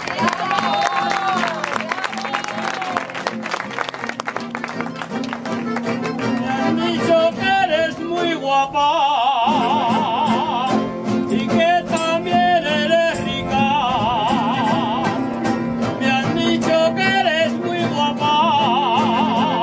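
Aragonese jota played on accordion with strummed guitar. About halfway in, a singer comes in with a held, strongly wavering note in jota style, and sings another such phrase a few seconds later.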